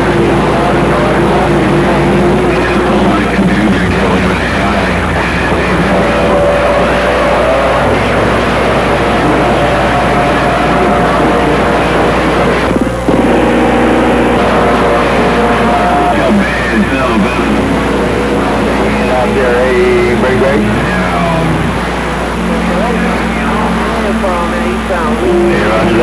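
Music transmitted over a CB radio channel and heard through the receiver's speaker, with held notes that step in pitch over steady static and a low hum.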